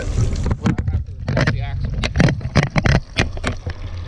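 Handling noise as the camera is picked up and moved in close: a quick series of clicks and knocks, over a low wind rumble on the microphone.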